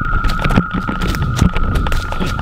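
Running footsteps on a leafy forest floor, about two to three footfalls a second, over a steady high ringing tone.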